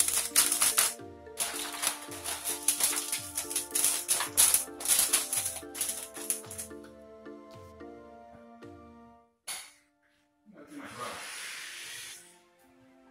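Aluminum foil crinkling and rustling as it is pressed and folded around a roasting pan, over background music with a steady beat. The crinkling stops after about seven seconds, and near the end a short noise burst and a stretch of hiss follow.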